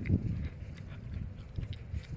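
Irregular low rumbling and thumping from wind and handling on a handheld phone's microphone outdoors, loudest in the first half second and then dropping back.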